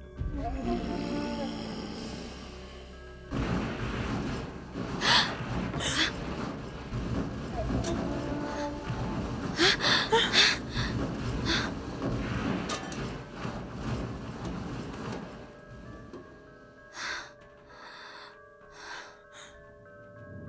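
A laugh, then the sound effects of a fantasy fight over dramatic music: a string of sharp hits and whooshes, densest in the middle, with a few more strikes near the end.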